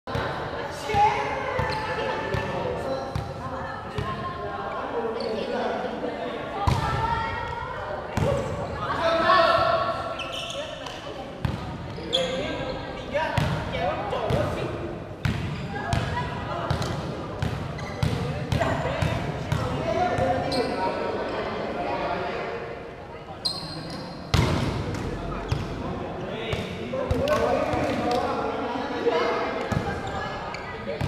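Players' voices calling and chatting in a large, echoing sports hall, with repeated sharp thuds of a ball being hit and bouncing on the court during a volleyball game.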